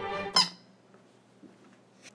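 Yellow rubber chicken toy squeezed once by hand, giving one short squeak.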